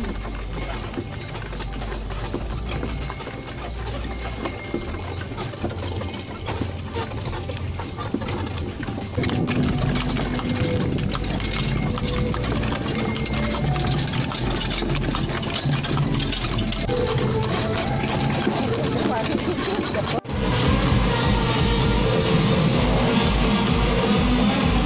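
Ride in a horse-drawn carriage: the cart rattles and jolts with a pulsing low rumble and the clip-clop of the pony's hooves on pavement. About nine seconds in it gets louder, with held tones over the rattle, and near the end it cuts sharply to loud dance music with a steady beat.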